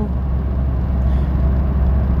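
Steady low rumble of a car heard from inside the cabin, with no change in pitch or level.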